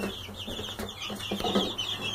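A brood of Barred Rock chicks peeping without pause: many short, high chirps overlapping one another.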